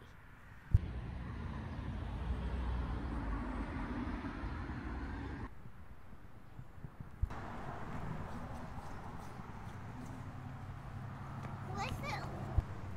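Outdoor background noise dominated by wind rumbling on the phone's microphone, with a steady hiss. It starts and stops abruptly with sharp clicks, once about three quarters of a second in and again after about seven seconds, with a quieter stretch in between.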